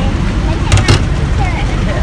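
Steady low rumble of roadside traffic with wind on the microphone. Just under a second in comes a quick cluster of sharp taps as a knife presses a banana flat.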